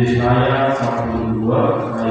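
A low-pitched singing voice in long held notes, starting suddenly and shifting to a new note about a second and a half in.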